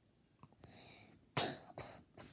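A young girl coughing twice in quick succession about a second and a half in, the first cough the louder.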